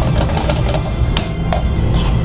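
A cooking utensil stirring rice and prawns in a metal frying pan, with several sharp knocks and scrapes against the pan, the loudest a little past a second in, over a steady low rumble.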